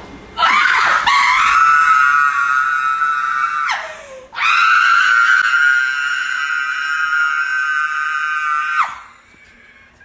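A woman screaming in two long, high shrieks: the first lasts about three seconds and drops in pitch as it ends, and the second, after a short breath, is held at one pitch for about four and a half seconds.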